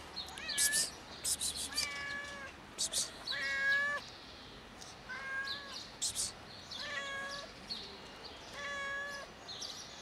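Fluffy white-and-grey cat meowing over and over, about six drawn-out meows of half a second or so, spaced a second or two apart. Short, sharp high-pitched sounds come in among the first few meows.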